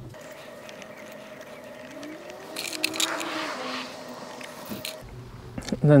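Small rubber cable seals being worked onto the ends of wires by hand: faint scraping and squeaky rubbing with small clicks, busiest in the middle, over a steady faint tone.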